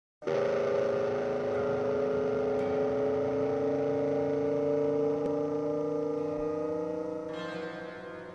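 Background music: one long held chord of steady tones that comes in at once and fades over the last second or so.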